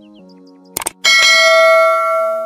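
A mouse-click sound effect, a quick double click, just under a second in, followed by a bright notification-bell ding that rings on and slowly fades, over soft background music.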